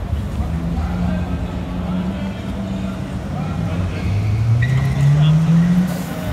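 A car engine in the street, running steadily at first and then revving up, its pitch rising over the last two seconds as it gets louder. Voices of people on the sidewalk are heard underneath.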